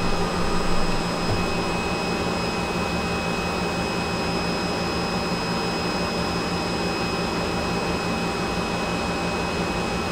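Steady machine hum with a thin, constant high whine from the running CNC lathe's equipment while the spindle is stopped. There are a few slightly louder bumps in the first second.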